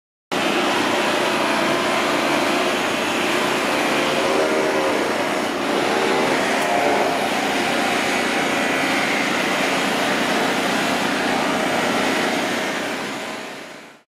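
Steady mechanical drone of machinery running at a demolition site, with a faint wavering hum inside it. It starts abruptly and fades out near the end.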